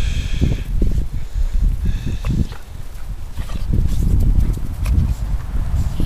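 Two young dogs, a pit bull and an American Staffordshire terrier puppy, play-wrestling, with scuffling and low, irregular rumbling growls throughout. A short high-pitched whine comes at the very start and another about two seconds in.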